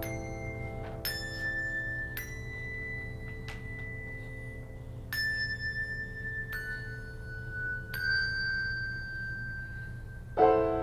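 Handbells struck one note at a time, about seven single ringing notes roughly a second apart, each left to ring on. Soft held piano notes sound beneath them.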